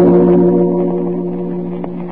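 A sustained organ chord, the closing music of an old-time radio drama, held and fading away. A faint click comes near the end.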